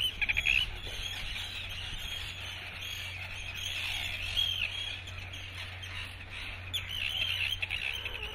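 A chorus of seabirds calling: many short, high, arching calls overlapping, with a quick run of ticking calls in the first half-second and a steady low rumble beneath.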